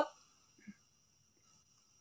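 Near silence between sentences on a video-call stream, with one very faint brief sound about two-thirds of a second in.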